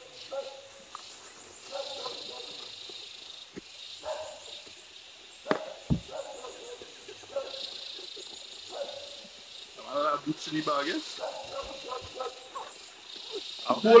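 A dog barking off and on, short calls every second or two, with some quiet talk between them.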